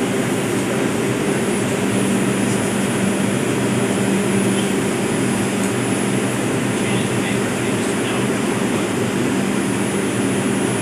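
Steady humming and blowing of an R142 subway car's ventilation and onboard equipment while the train stands still, held in a delay.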